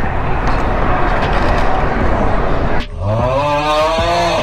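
Wind and road noise on a moving small motorbike's handlebar camera. About three seconds in, the noise drops away and a drawn-out, rising pitched sound takes over as the riders come together.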